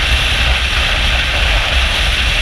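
Wind noise on a helmet-mounted camera while riding a BMW R18 motorcycle at freeway speed: a loud, steady hiss over a low, buffeting rumble.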